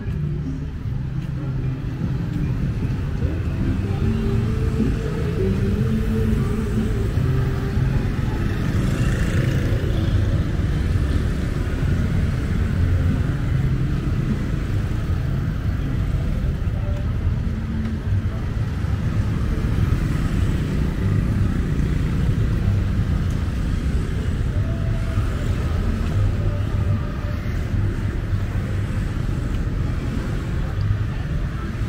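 Street traffic ambience: a steady rumble of motorbikes, tuk-tuks and cars on the road alongside.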